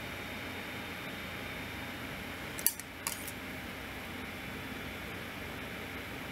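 Steady low room noise with a faint hum, broken by a couple of brief soft clicks a little after halfway.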